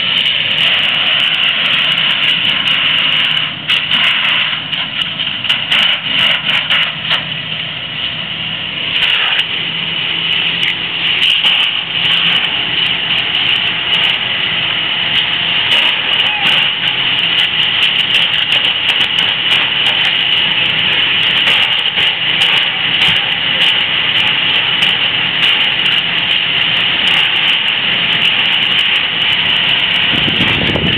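Engine noise running steadily, with a high whine that holds one pitch and scattered sharp crackles and clicks throughout.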